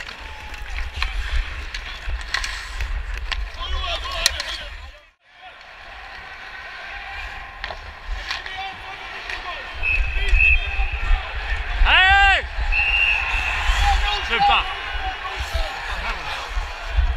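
Ice hockey play heard up close on the ice: skates and sticks scraping, sharp clacks of stick on puck, arena crowd noise and a low rumble of motion, with a brief dropout about five seconds in. Near the end a referee's whistle blows two short blasts, with a loud shout between them.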